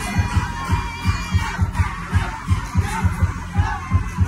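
Loud party music played over a sound system, with a heavy bass beat pulsing about three times a second, and the voices of a dancing crowd shouting and chattering over it.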